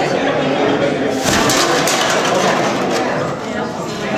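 Plastic bags rustling and cans and bottles clinking on the recycled-material costumes of several performers as they move. It swells to a dense crackling rustle from about a second in until near the three-second mark.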